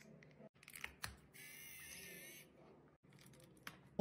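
Faint clicks of a plastic gadget being handled, then a high-pitched buzz for about a second.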